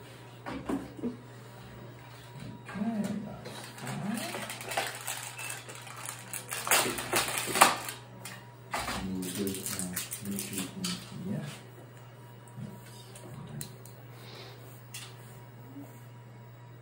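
Rustling, clicks and light clatter of things being handled, loudest about seven seconds in, over a steady low hum; short soft voice-like sounds come about nine to eleven seconds in.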